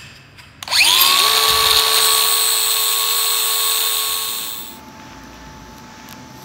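An electric power tool's motor spins up with a rising whine about half a second in. It runs at a steady, loud whine for about four seconds, then stops.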